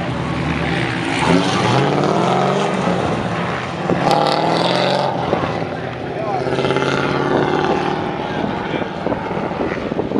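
Drift car's engine revving hard as it accelerates away, its pitch rising and falling with each gear and throttle change.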